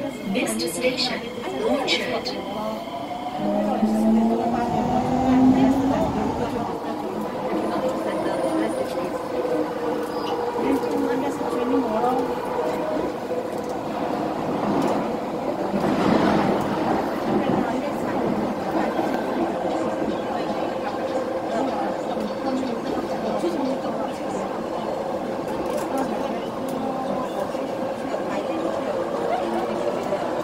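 Metro train running, heard from inside the carriage: a steady rumble with a motor whine that rises in pitch over the first several seconds and then holds level.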